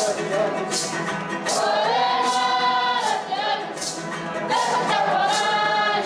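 Background music: a choir singing long held notes, with a light regular beat underneath.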